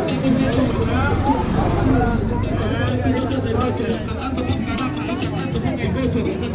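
Several people talking at once, with a motorcycle engine running slowly past close by.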